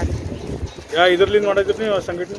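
A woman speaking close to a handheld microphone, loudest in the second half. A low rumble on the microphone comes in the first half-second.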